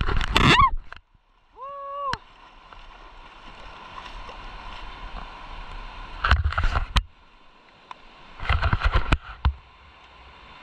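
A river running steadily over stones, with two short bursts of crunching and knocking footsteps on the pebbles, the second about a second and a half after the first. A short held tone sounds about two seconds in.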